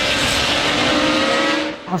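Several classic racing motorcycles running at speed as they approach along a road circuit, their engine note rising slightly, fading near the end.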